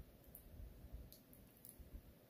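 Near silence with a few faint small clicks from a 316L stainless steel watch bracelet and clasp being handled, as fingers try to work the clasp's quick micro-adjust, which will not move with its protective plastic still on.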